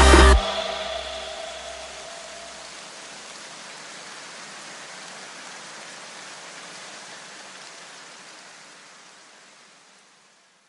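Electronic backing music cuts off a moment in, leaving a steady hiss of noise, like rain, that slowly fades out to silence by the end.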